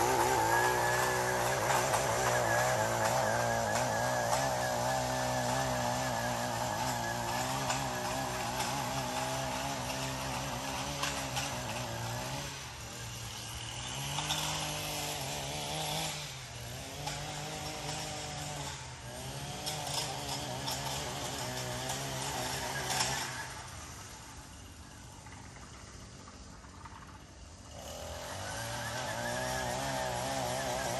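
Small two-stroke engine of a handheld lawn tool running, its pitch dipping and climbing again several times as the throttle is eased and opened. It turns quieter for a few seconds near the end, then revs back up.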